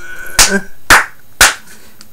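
Three sharp hand claps, evenly spaced about half a second apart.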